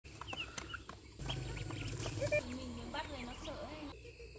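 Chickens clucking and calling, with short high chirps in the first second.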